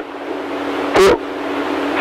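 Steady rushing hiss on the pilot's radio transmission, growing slowly louder, with one spoken count of "two" about a second in.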